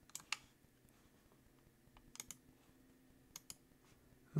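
Faint computer mouse clicks in three pairs: one pair just after the start, one about two seconds in, and one near the end, over near-silent room tone.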